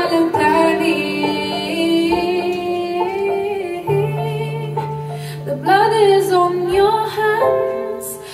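A female vocalist sings long, held wordless notes with vibrato over sustained accompaniment chords. A low bass note comes in about four seconds in and drops out near the end.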